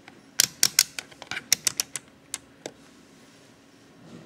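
Rotary range-selector dial of a digital multimeter being turned by hand, its detents clicking about a dozen times in quick succession over roughly two seconds as it is set to the 10 A DC range.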